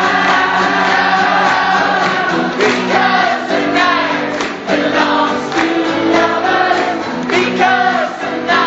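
A live song with a lead singer and a roomful of audience voices singing along together in sustained notes, recorded from among the crowd.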